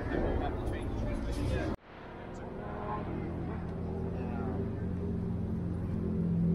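Outdoor chatter and noise that cuts off suddenly about two seconds in. Then a fifth-generation Honda Prelude's four-cylinder engine idles steadily through a Mugen Twin Loop exhaust, slowly growing louder, with voices in the background.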